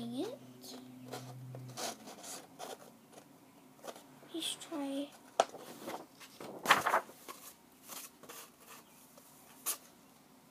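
Sheet of paper rustling and crinkling in short scratchy bursts as it is handled and rolled around a cardboard tube, with one louder rustle about seven seconds in.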